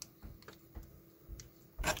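A few faint clicks and light scraping of small plastic parts as a digital thermometer's case and internals are pressed back together by hand.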